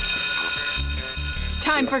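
Wall-mounted electric school bell ringing steadily for about a second and a half, signalling the start of class.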